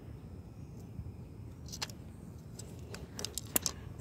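Low steady outdoor background rumble with a few light clicks and taps, one about two seconds in and a quick cluster near the end, as a wooden ruler and small persimmon fruits are handled and set down on concrete pavement.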